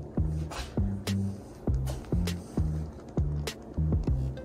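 Background music with a steady beat: regular drum hits over a bass line stepping between notes.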